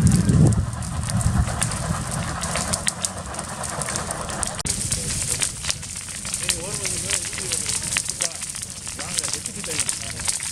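Brush and trees burning in a wildfire, crackling with many sharp pops that grow busier about halfway through. A low rumble comes at the very start, and faint voices sound in the background.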